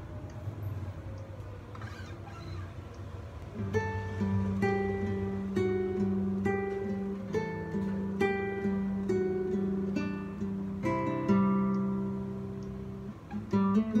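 Classical guitar played fingerstyle: soft at first, then from about four seconds in, plucked melody notes about once a second ringing over held bass notes, with a couple of quick louder strokes near the end.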